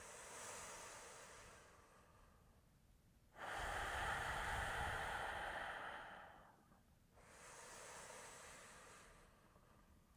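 A person breathing slowly and deeply from the abdomen: three long breaths, a faint one, then a louder one about three and a half seconds in that lasts some three seconds, then another faint one.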